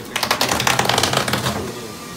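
Foil-faced bubble-wrap insulation crackling in a rapid run of clicks for about a second and a half as it is pressed and smoothed down by hand.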